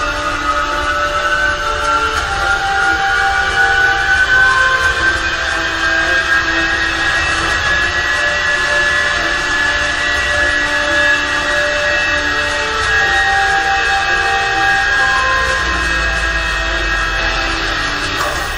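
Jet-turbine-like whine rising in pitch over the first several seconds, then held steady: a sound-effect gas turbine spooling up. Sustained synthesized notes that change pitch in steps sound along with it.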